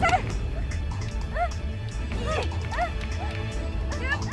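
Dramatic film background music with a low, steady pulse. Over it a woman gives about four short cries, each rising and then falling in pitch, during a struggle.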